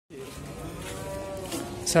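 Cow mooing: one long, low call.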